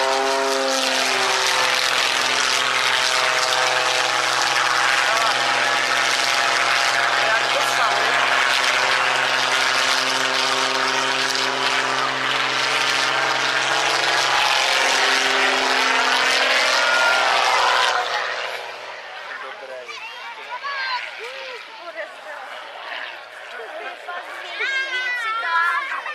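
Aerobatic propeller plane's piston engine running loud at high power, its note sliding in pitch as the plane climbs and manoeuvres. About eighteen seconds in it drops sharply to a much quieter, more distant sound.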